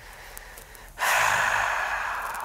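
A man's long, breathy sigh, starting about a second in and slowly trailing off.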